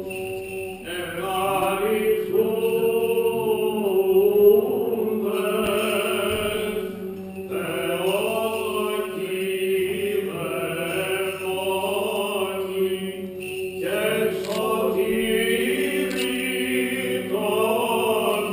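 Greek Orthodox Byzantine chant: voices singing a slow, winding melody over a steady held drone note (the ison).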